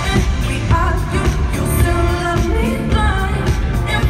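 Live pop song: a woman sings the lead into a microphone over a band of drums, bass, electric guitar and keyboards, with heavy bass and a steady drum beat.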